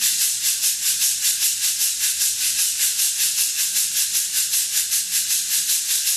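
Meinl SH-7 fiberglass shaker played in a smooth, steady rhythm of about five or six even strokes a second, its beads thrown against the inside of the shell with a bright, crisp sound. It is played without accents.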